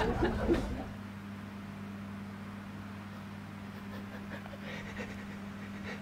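Breathy, held-back laughter that fades out within the first second, then a steady low hum in a quiet room.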